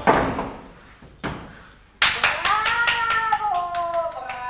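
A body falling onto a wooden stage: a heavy thud with a scuffing tail that fades over about a second, and another short scuff a second later. About halfway in, scattered sharp hand claps start, together with a long drawn-out voice.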